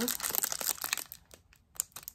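Clear plastic wrapping around a roll of stickers crinkling as it is handled: a quick run of crackles for about the first second, then quieter, with a few last crinkles near the end.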